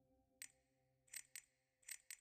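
Near silence, broken by four faint, short ticks.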